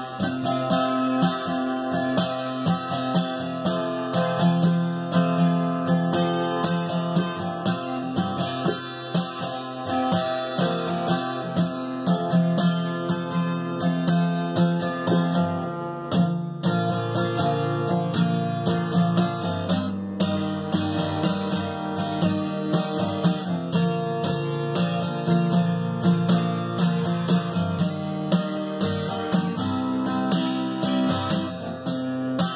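Martin acoustic guitar played solo with a capo, an improvised run of picked notes and chords ringing out.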